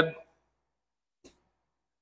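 Near silence after the last word of a man's sentence dies away, broken only by a single faint click a little over a second in.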